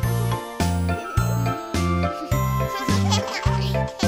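Upbeat children's song backing music: a bouncy bass line on a steady beat, with light chiming notes above it.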